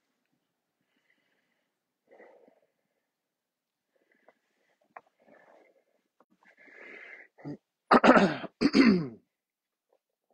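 A man clears his throat, then coughs twice in quick succession near the end, loud: a frog in his throat.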